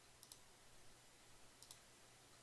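Faint computer mouse clicks over near-silent room tone: two quick double clicks, about a second and a half apart.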